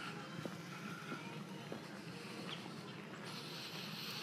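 Quiet outdoor background, a faint steady hiss, with a few soft bird chirps and a few faint taps.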